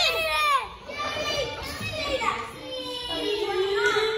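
Young children shouting and squealing at play, their high-pitched voices rising and falling in pitch, with one long held call near the end.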